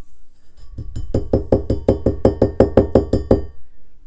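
Stainless steel tumbler knocked rapidly and repeatedly against the work surface, about six knocks a second for roughly two and a half seconds. Each knock carries a short metallic ring.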